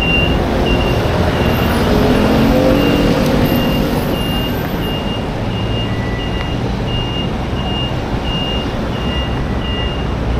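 City street traffic: cars, buses and scooters running past, one engine rising in pitch as it pulls away in the first few seconds. Over it, a high electronic beep repeats steadily a bit under twice a second.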